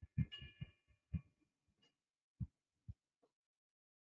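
A few faint, dull thumps at irregular intervals, with faint high tones over the first second.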